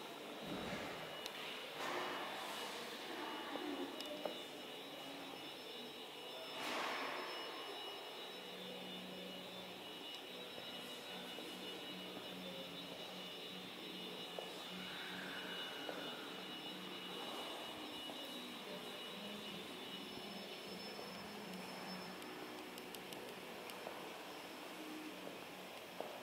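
Quiet steady background hum of a large indoor hall, with faint high steady tones and a few brief soft swishes in the first seven seconds.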